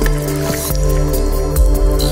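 Slow ambient sleep music of sustained, steady synthesizer tones, with a few short drip-like sounds.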